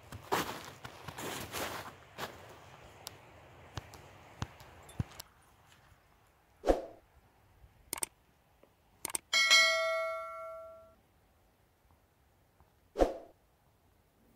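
Footsteps in snow for the first five seconds. Then a few short clicks and knocks from a subscribe-button animation, and about nine seconds in a bell chime that rings and fades over about a second and a half.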